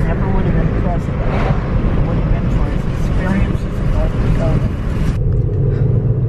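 Inside a moving car's cabin: steady engine and tyre rumble with wind hiss as the car climbs a winding road. About five seconds in the hiss cuts off suddenly, leaving the low rumble.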